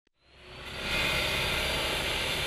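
Steady wash of background noise that fades in after a brief silence and then holds even.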